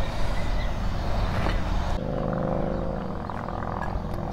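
An engine running in the background: a steady rumble that takes on a held, pitched drone about halfway through.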